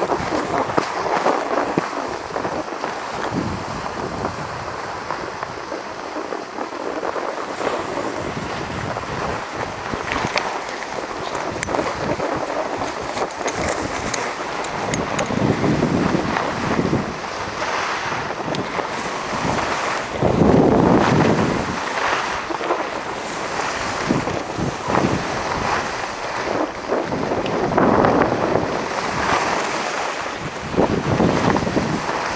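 Skis hissing over groomed snow with wind rushing across the microphone during a downhill run. The rushing rises and falls in surges, loudest about two-thirds of the way through.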